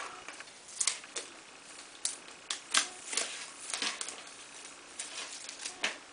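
Electrical tape being unwrapped and peeled off a plastic fan-and-PVC-pipe assembly, in short irregular crackles and clicks.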